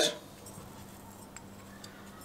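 Red pepper flakes sprinkled from a small ceramic ramekin into a glass bowl: a quiet stretch over a faint steady hum, with two faint light ticks about a second and a half in.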